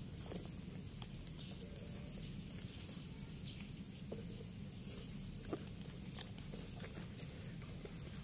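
Quiet outdoor ambience with a steady high-pitched hiss, faint scattered chirps, and a few light clicks and taps, fitting a kitten pawing at small plastic toys.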